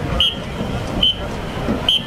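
Marching band percussion keeping a slow, even beat for a dance routine: a sharp, high click repeating a little faster than once a second, three times, over crowd noise.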